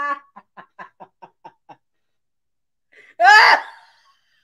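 Woman laughing in short rapid bursts that fade out over the first two seconds, then after a pause a loud, high-pitched laughing cry a little past three seconds in.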